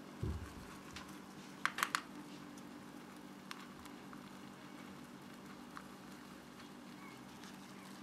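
A few small, sharp clicks and taps from a thin plastic cup held in the hand, three close together about two seconds in, after a soft low thump just after the start, over a faint steady hum.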